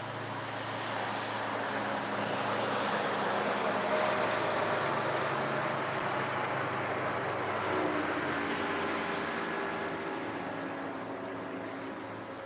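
A distant engine passing: a steady rumble with a faint hum that swells to its loudest about a third of the way in and fades toward the end.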